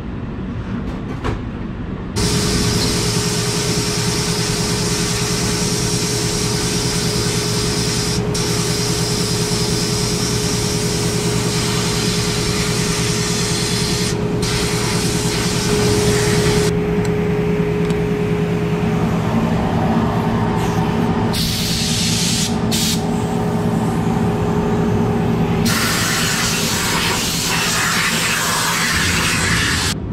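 Blast cabinet gun spraying crushed-glass grit onto the aluminium-magnesium parts of a Gast rotary vane aerator: a loud, steady hiss of air and grit starting about two seconds in, broken by a few brief pauses, over a steady hum.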